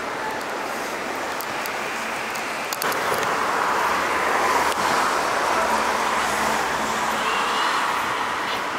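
Street traffic noise, a steady hum of passing road vehicles, stepping up and staying louder from about three seconds in.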